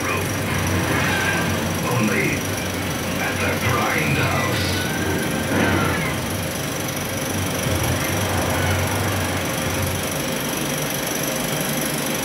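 35mm film projector running steadily, a constant mechanical noise with a low hum. Over it, the trailer's soundtrack comes through faintly as muffled voices and music in about the first half, then drops away.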